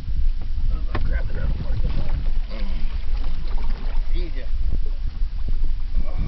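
Steady low wind rumble on the microphone and water noise from the open sea at the side of a small boat, with muffled voices under it and a single sharp knock about a second in.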